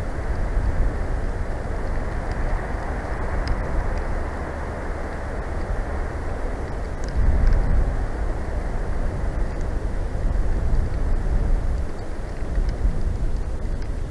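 Wind buffeting the nest camera's microphone: a loud, steady rush with a heavy, uneven low rumble that rises suddenly at the start and holds.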